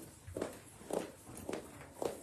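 A person's footsteps walking close by, soft thumps about two steps a second, four of them.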